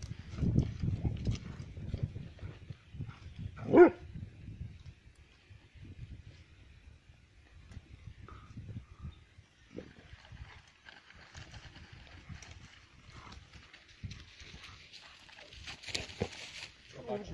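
Kangal shepherd dogs play-fighting, with low growling and scuffling over the first few seconds. One short, loud bark comes about four seconds in.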